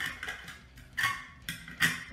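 About four sharp metallic clinks, the loudest near the end, as a metal washer and aluminum disc are fitted onto a shop vac motor's shaft.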